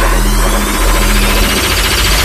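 Dubstep track: a sustained heavy synth bass runs unbroken, with a rising high sweep above it.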